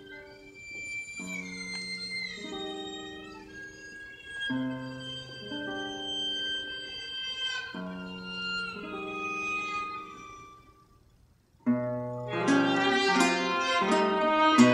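Violin and classical guitar duo playing contemporary classical music: a soft passage of guitar notes under a high violin line with sliding notes, which dies away to a short pause about ten and a half seconds in, then both instruments come back in suddenly and much louder near the end.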